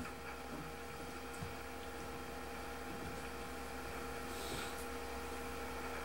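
Steady electrical hum made of several even tones over faint room noise, with a faint hiss about four and a half seconds in.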